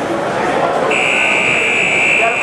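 An electronic match-timer buzzer sounds one long, steady, high tone starting about a second in, over the chatter of a crowd in a large hall.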